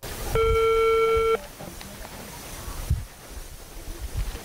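A single steady electronic beep from a mobile phone, one flat tone lasting about a second. It is followed by outdoor ambience with low rumbles of wind or handling on the microphone.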